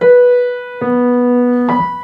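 Piano playing single B notes in different octaves, each struck and left to ring: one at the start, a lower B about a second in, and a higher B near the end.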